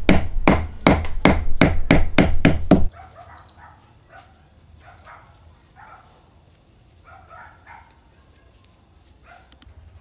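Hand work on a log: fast, even strokes of wood being rubbed or scraped, about five a second, which stop abruptly about three seconds in. After that only a faint, quiet background with a few short high sounds.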